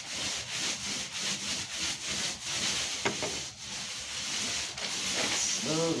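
Paintbrush being worked back and forth over a wall in quick repeated strokes, about three a second, smoothing out a fresh coat of paint.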